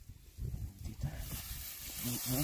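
Tall grass rustling as a hand reaches in and parts the stems, over a low, uneven rumble; the rustling grows louder just past the middle.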